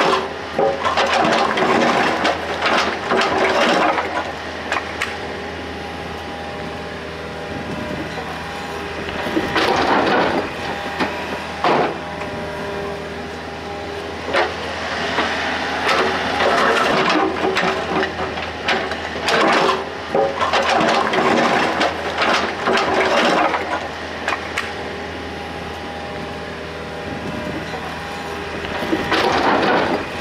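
A Komatsu mini excavator's engine runs steadily while its bucket tips loads of broken stone and masonry rubble into a truck bed, giving several bursts of clattering rock over the engine hum.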